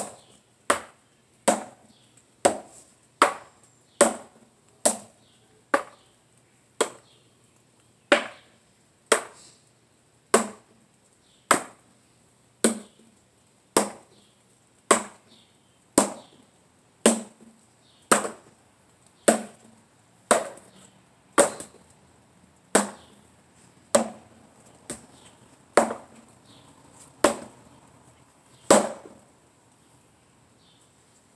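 A talwar striking a tape-wrapped wooden pell in a steady run of about 27 sharp knocks. They come a little under a second apart at first, then settle to about one a second.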